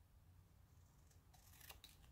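Faint snips of scissors cutting through poster board, a few quick snips in the second half over a low steady room hum.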